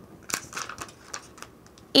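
Heat transfer vinyl on its plastic carrier sheet crinkling and clicking as it is handled and laid down, a short run of crackles in the first second.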